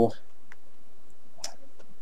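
Steady background hiss of a voice-recording setup, with two faint short clicks: a weak one about half a second in and a sharper one about a second and a half in.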